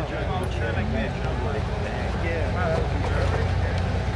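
Faint chatter of several voices over a steady low mechanical hum, with no loud or sudden sound.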